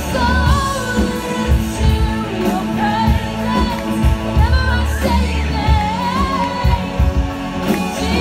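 Live band: a woman singing a wavering melody into a microphone over amplified electric guitars.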